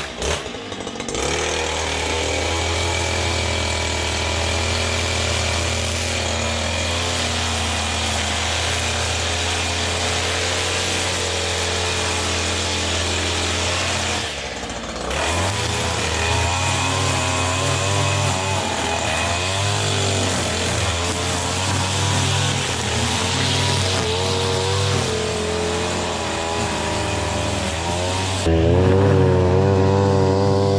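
Stihl petrol string trimmer engine catching right after a pull-start and then running, its pitch rising and falling as the line cuts grass. The engine eases off briefly about halfway through, then picks up again.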